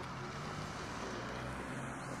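A car driving by on the street, a steady low engine hum under general street noise.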